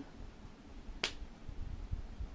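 A single short, sharp click about halfway through, over quiet room tone.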